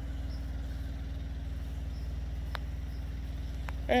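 Semi-truck auxiliary power unit (APU), a small diesel engine, running at a steady low hum with an even firing pulse.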